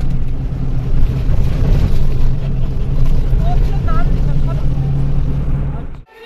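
Engine and road noise inside the cabin of a moving bus: a loud, steady rumble with a low drone. Faint voices show briefly about midway.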